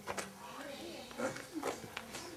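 Faint voices and laughter in short snatches, with a sharp click shortly after the start.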